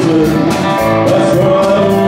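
Live band playing with electric guitars and drums, the guitar line holding and bending notes.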